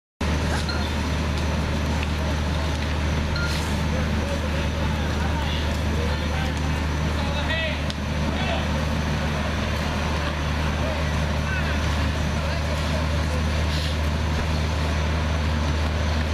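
Fire truck engine running steadily with a deep, even hum, with voices faintly in the background.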